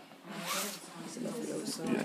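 A brief rustle about half a second in as a hand and sleeve brush against a wicker basket to stroke a cat lying in it, with low, indistinct voices.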